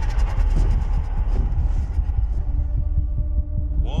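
Film trailer soundtrack: a deep, steady low rumble of score and sound design, with a faint held tone coming in about halfway through.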